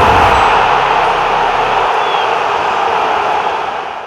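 Outro sound effect: a loud, steady static-like hiss, with a low rumble under it that dies away about two seconds in, the hiss easing off toward the end.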